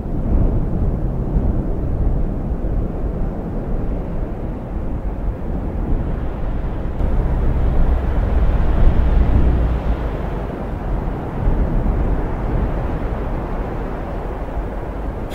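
Outdoor ambient rumble of wind on the microphone, with water washing on a pebble shore; the low, gusty noise swells about halfway through.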